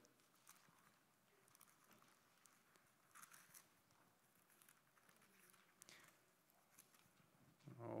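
Near silence, broken by faint, scattered rustles of thin Bible pages being leafed through by hand while searching for a passage.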